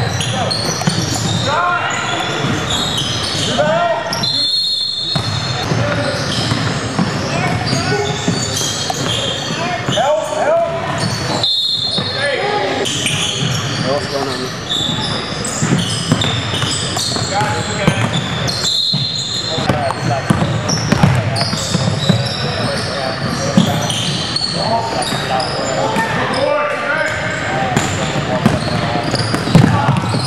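Live basketball game in a large gym hall: the ball bouncing on the hardwood court, sneakers on the floor, and players and spectators talking and calling out.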